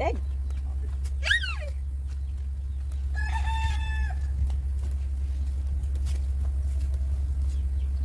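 A rooster crowing once, a held call of about a second near the middle, after a short, sharply falling call about a second in. A steady low rumble runs underneath.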